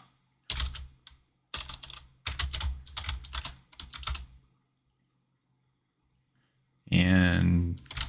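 Typing on a computer keyboard: quick clusters of keystrokes for about four seconds, then a pause.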